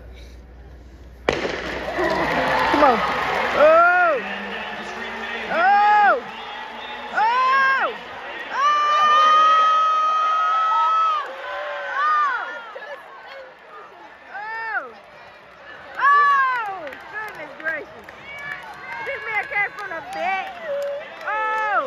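A stadium crowd roars as a sprint race starts, about a second in. A voice close by then yells and whoops in long rising-and-falling shouts, one held for about two seconds near the middle, and the cheering dies down toward the end.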